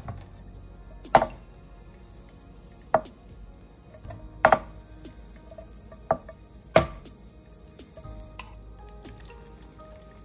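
A nonstick frying pan and its utensils knocking sharply about six times at uneven intervals as the pan is handled. Under the knocks, butter is foaming faintly in the pan.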